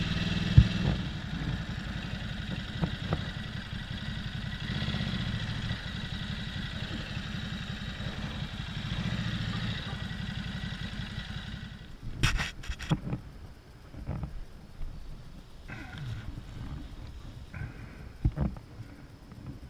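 Ducati motorcycle engine running at low speed with a steady low pulsing, heard from the rider's seat, until it cuts off about twelve seconds in. A few sharp clicks and knocks and some softer handling noises follow.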